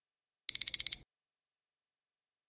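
Electronic countdown-timer alarm: a quick burst of several high beeps, about half a second long, signalling that the time is up.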